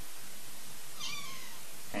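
Domestic cat giving a short, soft meow about a second in, its pitch falling.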